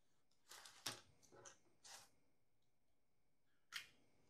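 Quiet classroom with a few brief rustles and clicks from students working at their desks: a short cluster about a second in and one sharp click near the end.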